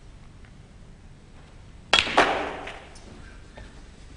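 Snooker shot: the cue tip clicks sharply against the cue ball about two seconds in, then the cue ball clicks against an object ball a fraction of a second later, with a tail that fades over most of a second.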